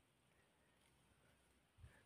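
Near silence: a pause with no clear sound.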